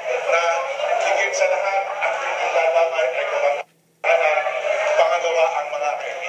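A man's voice over a handheld microphone, played back from a video on a screen, with a sudden dropout of about half a second a little past halfway.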